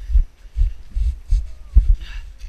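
Low thuds about two and a half times a second as someone runs on snow with the camera, each footfall jolting the camera and its microphone.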